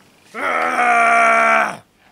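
A woman's long held vocal sound without words: one steady tone lasting about a second and a half that drops in pitch as it ends.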